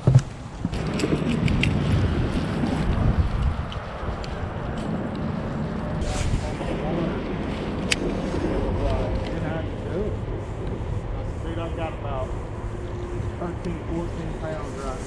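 Gusty wind rumbling on the microphone, with faint voices now and then after the middle.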